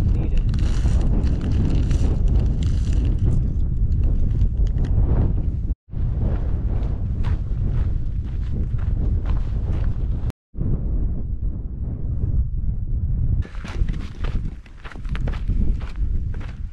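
Wind buffeting the microphone with a steady low rumble, over footsteps on a moorland path, broken by two short gaps where the footage is cut.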